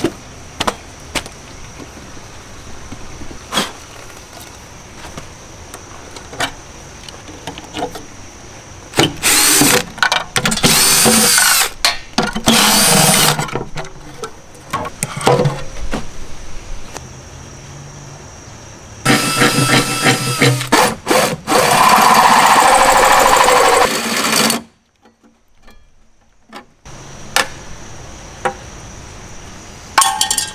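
A power drill cuts a round hole through the steel rear body panel of a 1997 Jeep TJ, running in several short bursts and then one longer run of about five seconds. The owner says this drill overheated on the job.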